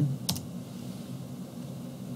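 A computer keyboard keystroke, a sharp double click about a third of a second in, pressing Enter to confirm a typed value; then a quiet low steady hum.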